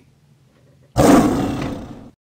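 Lion roar sound effect, starting suddenly about a second in, loud at first and fading before it cuts off.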